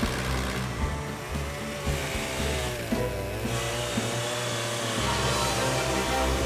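Chainsaw cutting into a wooden log, running steadily over background music.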